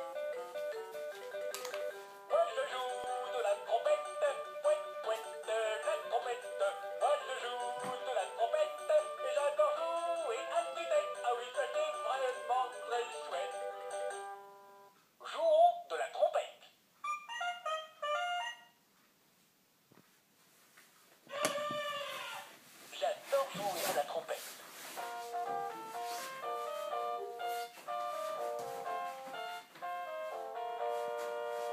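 VTech P'tite Trompette electronic toy trumpet playing a tinny electronic melody through its small speaker. The tune stops about fourteen seconds in, followed by a few short bursts of sound and a brief near-silent pause. A voice-like passage comes a little after twenty seconds, and the melody starts again about twenty-five seconds in.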